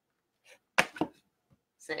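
Two sharp taps in quick succession, about a quarter second apart, followed near the end by a brief spoken word.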